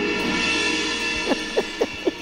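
Background music score: a held chord with a bright shimmering wash above it, fading after about a second.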